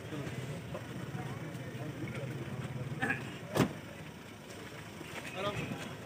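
A vehicle engine idling with a steady low hum, under faint murmuring voices of a crowd. A single sharp click sounds about three and a half seconds in.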